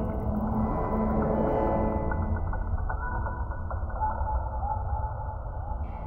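Experimental electronic sound-art piece: a dense low rumble layered with clicking, mechanical textures, and a wavering tone that comes in about four seconds in.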